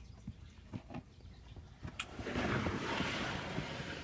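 A plastic reptile tub sliding along a rack shelf, a scraping rush that follows a sharp click about two seconds in, with a few faint clicks and knocks before it.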